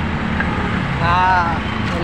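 Steady low road-traffic noise from passing vehicles.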